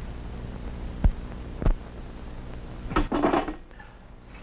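Two sharp clinks of tableware about half a second apart, then a short clatter near the end, over the steady hum and hiss of an old film soundtrack.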